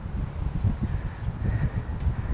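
Irregular low rumble of wind and handling noise on a handheld phone microphone outdoors, over faint background noise.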